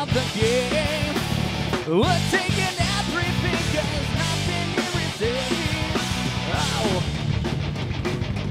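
A rock band playing live: electric guitars, bass and drums with cymbals, and a singer on vocals.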